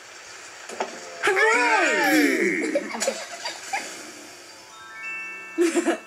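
Cartoon soundtrack: a wavering pitched glide that swoops up and then falls, about a second in, followed near the end by a quick rising run of glockenspiel-like chime notes, a scene-transition music cue.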